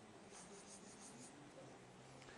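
Faint strokes of a felt-tip marker on flip-chart paper drawing a row of small loops, from about half a second to a second and a half in, over near-silent room tone.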